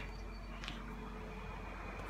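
Faint steady background hum and hiss, with one light click about two-thirds of a second in.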